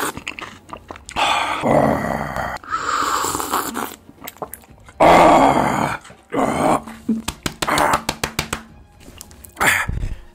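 A man sipping and slurping from a paper cup, with loud breathy exhales between sips, then a run of quick wet smacking clicks of the lips and mouth.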